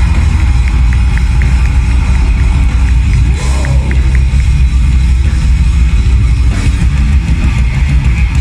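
Death metal band playing live through a festival PA: heavy distorted guitars and bass over drums, loud and bass-heavy.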